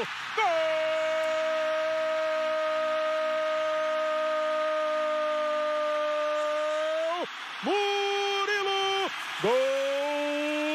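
Brazilian TV football commentator's drawn-out goal cry, one note held for about seven seconds, then two shorter shouted calls near the end.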